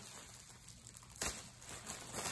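Plastic bread bag crinkling faintly as it is untwisted and opened, with a brief louder rustle about a second in.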